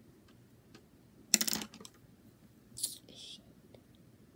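Small plastic makeup items being handled: a short clatter of clicks about a second and a half in, then a lighter click and a brief hiss near the end.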